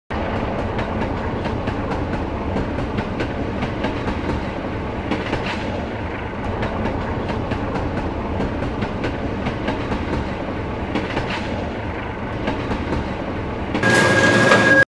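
Subway train running, heard from inside the car: a steady rumble with scattered clacks of the wheels over rail joints. Just before the end it gets louder and a steady high tone sounds over it.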